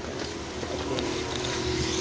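A steady low mechanical hum with a faint steady tone running under it, and a single light click about a second in.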